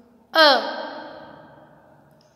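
Speech only: a woman's voice saying the single Kannada vowel "a" once, falling in pitch and trailing off slowly.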